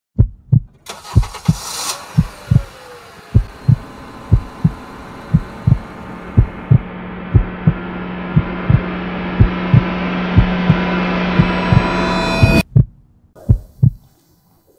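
Dramatic sound-design intro: deep heartbeat-like double thumps repeating about once a second under a swelling drone that grows steadily louder, then cuts off suddenly about twelve and a half seconds in, leaving two last thumps.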